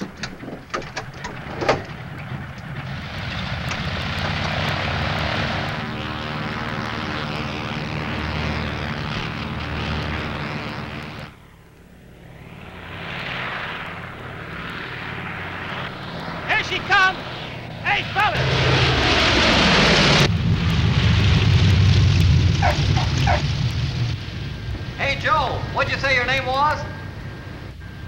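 Propeller airliner's engines running at high power for takeoff, then the plane passing low overhead with its engine note falling steeply in pitch about three-quarters through. Brief shouted voices come in near the end.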